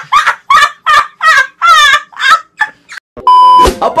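A rapid series of short, high-pitched warbling cries, about three a second, some with a fast trill in them, followed a little after they stop by a steady half-second electronic beep that ends in a thump.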